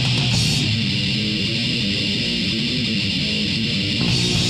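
Thrash metal band playing an instrumental passage from a 1989 demo recording: a chugging distorted electric guitar riff with bass. The high, hissy top of the mix drops away about half a second in, leaving the guitars to carry the riff.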